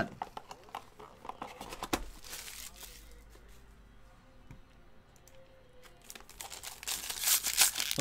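Plastic and foil packaging crinkling and rustling under the hands for the first few seconds, then a quieter lull. Near the end a foil trading-card pack is crinkled and torn open, getting louder.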